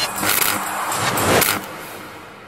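A whooshing sound effect from an animated title sting. It builds up, drops off sharply about a second and a half in, and then trails away, with music underneath.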